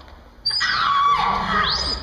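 Electronic sci-fi sound effect that starts about half a second in: warbling tones slide down in pitch over a held high tone, then a quick upward sweep near the end.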